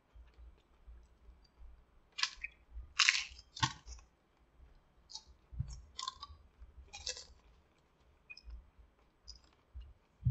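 A person chewing a crunchy hard-shell taco: a few short crisp crunches, the loudest about two to four seconds in, with softer ones around six and seven seconds.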